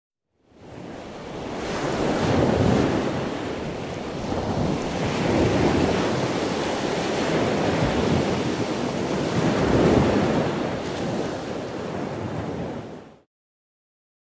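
Ocean surf: waves breaking and washing in, swelling and ebbing every few seconds. It fades in within the first second and cuts off suddenly near the end.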